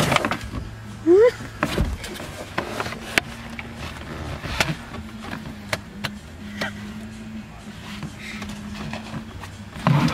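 Volkswagen Jetta front seat being wrestled out of the car: its metal frame and plastic trim knock and click against the cabin many times. A short laugh comes about a second in.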